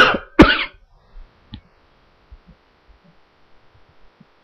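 A man coughing twice in quick succession, then quiet with a faint click about a second and a half in.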